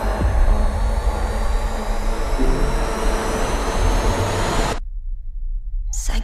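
Movie trailer soundtrack: the steady drone of a small plane's engine in the cabin, mixed with music and a slowly rising high whine. It cuts off suddenly about three-quarters of the way through, leaving only a low rumble.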